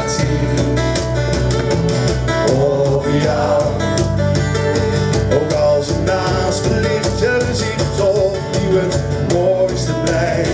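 Live band music: two strummed acoustic guitars over an electric bass line, with a voice singing over it.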